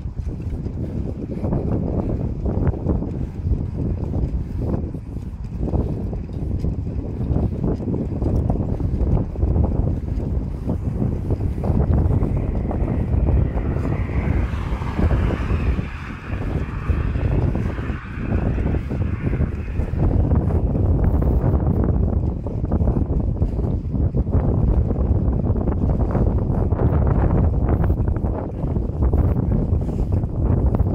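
Wind buffeting the phone's microphone as the bicycle rides along, a steady low rumble. A car passes on the road alongside, its tyre hiss swelling between about twelve and twenty seconds in.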